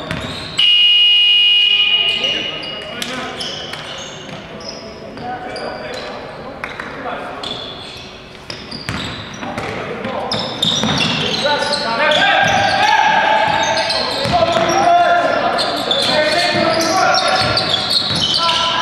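Indoor basketball game sounds in a large echoing hall: a loud, steady, shrill signal tone about half a second in, lasting about a second and a half, then a ball bouncing on the hardwood court with short sneaker squeaks, and players' shouting voices that grow louder from about ten seconds in.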